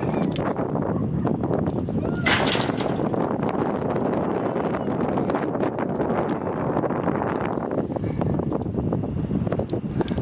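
Wind buffeting the microphone, a steady rough rumble with crackling through it, as the jumper falls and swings on the rope.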